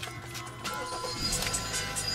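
A 2014 Hyundai Sonata's 2.4-litre GDI four-cylinder engine starting a little over a second in and then running at a steady low idle. Music plays throughout.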